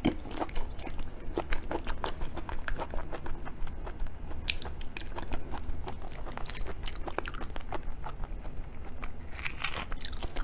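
Close-miked chewing and biting of raw shrimp: a dense run of short, wet clicks and soft crunches. Near the end comes a brighter crackle as a whole raw prawn is pulled apart by hand.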